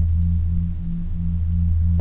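Background ambient music: a steady low drone with a tone above it that pulses a few times a second, in the style of meditation or singing-bowl music.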